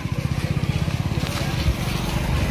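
A small engine running steadily close by, its beat even and rapid at about a dozen pulses a second, with a dull knock near the end.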